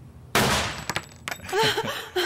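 A single pistol shot at an indoor range about a third of a second in, sharp and then quickly dying away. Laughter starts about halfway through.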